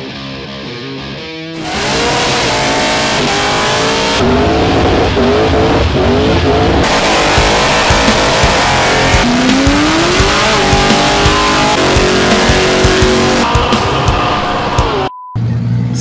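Cars doing burnouts: engines held at high revs and revving, with tyres spinning, mixed with rock music. The engine noise comes in loudly about two seconds in and cuts to a brief silence near the end.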